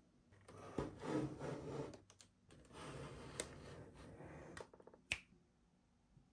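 Toy packaging being handled: soft rubbing and rustling in two stretches, with a few sharp clicks, the loudest about five seconds in.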